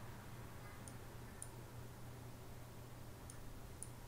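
Computer mouse button clicking: two pairs of short, light clicks, one pair about a second in and one near the end, over a faint steady low hum.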